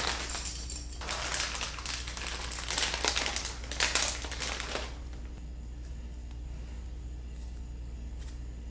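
Clear plastic zip bag crinkling and rustling as it is opened and a paracord phone tether is pulled out of it, in several rustles that stop about five seconds in, leaving a low steady hum.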